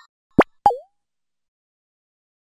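Two quick cartoon 'plop' sound effects about a quarter of a second apart: the first a fast upward swoop, the second a short blip that drops in pitch.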